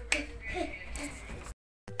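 A single sharp finger snap just after the start, followed by faint low sound and then a short stretch of dead silence near the end.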